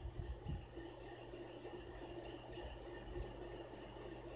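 Bottle gourd chunks and meat being stirred into masala in an aluminium pressure cooker, faintly, with a few soft low knocks near the start and again about three seconds in, over a steady faint hum.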